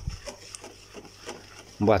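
Wire whisk stirring thick semolina batter in a plastic bowl: a faint scraping with a few light clicks of the wires against the bowl. A voice starts speaking near the end.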